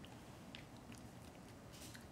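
Faint, sparse clicks and crinkles of a plastic snack packet as a child bites into a spicy snack strip held in it, with a short crinkle near the end.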